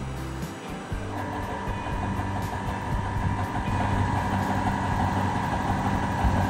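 Inverter-fed three-phase motor starting and running up to speed: a steady electrical hum with a higher steady whine that comes in about a second in, growing gradually louder.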